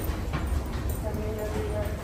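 Footsteps of a person walking across a terminal floor over a steady low rumble, with a brief steady two-note tone about a second in.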